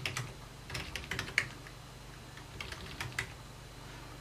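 Typing on a computer keyboard: a few short runs of key clicks, with a pause of about a second in the middle.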